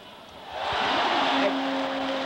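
Basketball arena crowd noise swelling up about half a second in and staying loud, with a steady held tone joining it partway through.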